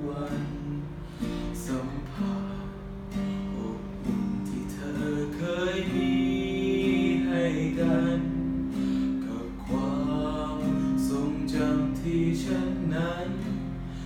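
A man singing a Thai song over guitar accompaniment, holding long notes that waver with vibrato through the middle.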